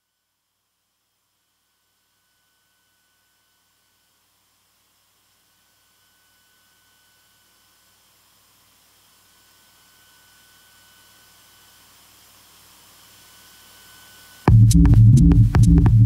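Live electronic music: a long pause of near silence in which faint high synthesizer tones and hiss slowly swell, then loud electronic music with a heavy low pulsing beat and sharp clicks cuts in suddenly near the end.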